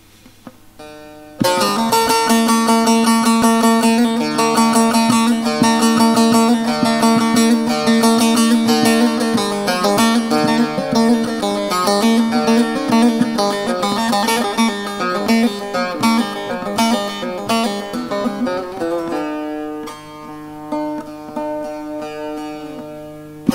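Solo bağlama (long-necked Turkish saz): after a second or so of quiet, a fast run of picked notes over ringing open-string drones, easing to slower, softer notes about three seconds before the end.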